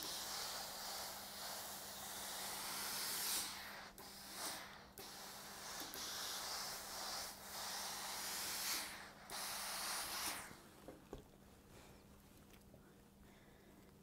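Lelit steam iron releasing steam in a faint hiss, broken by several short gaps, stopping about ten and a half seconds in, over a faint steady hum.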